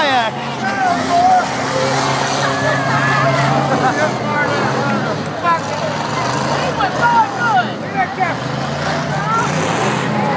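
Derby cars' engines running out on the track, heard under a crowd's chatter and shouts from the stands.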